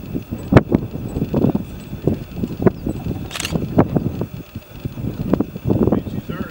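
Irregular low rumbles and knocks of wind and handling noise on the camera's microphone, with a few sharp clicks and a short hiss about three and a half seconds in.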